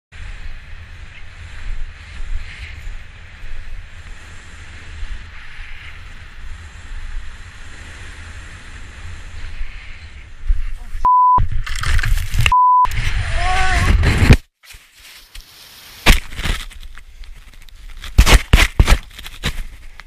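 Wind noise rumbling on a skier's helmet-camera microphone during a descent, then the fall off a cliff: a loud stretch of tumbling noise broken by two short steady beeps and a yell, cutting off suddenly about halfway through. Several sharp knocks and thumps follow near the end.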